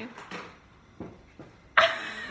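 A couple of small clicks, then a young woman bursts out laughing loudly near the end.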